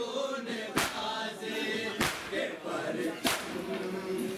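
A crowd of male mourners chanting a noha together while beating their chests in unison (matam). Three sharp collective slaps fall at an even beat, about one every second and a quarter, over the steady chanting.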